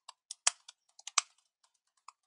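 Typing on a computer keyboard: quick, irregular keystroke clicks at about five a second. Two of the strokes are louder, about half a second and a little over a second in.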